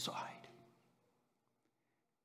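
A man's voice trailing off in the first half second, then near silence for the rest.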